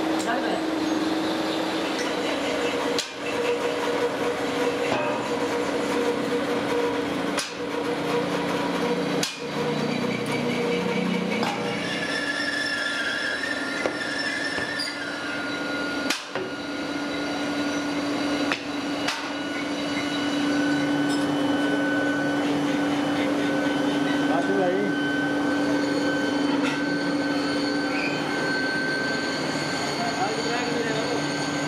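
Steady hum and rushing noise of cast iron foundry machinery, with a low and a high steady tone running through it.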